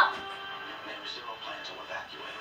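Television audio of a drama episode: background music with faint dialogue underneath. It opens on the fading tail of a short, loud vocal sound from one of the viewers.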